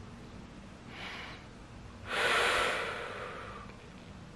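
A woman's sharp breaths of pain while piercing her own nose with a safety pin: a faint short breath about a second in, then a louder, longer one about two seconds in that fades away.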